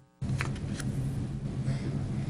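Steady low electrical hum of a meeting room's sound system. It cuts out briefly at the start, and two faint clicks come about half a second and a second in.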